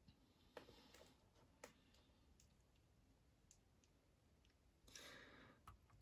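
Near silence: room tone with a few faint, sharp clicks in the first two seconds and a soft rustle near the end.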